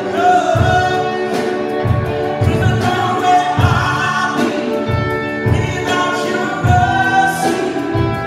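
Live worship band playing a song: several voices singing together over drum kit and guitars, with repeated drum hits and cymbal strokes.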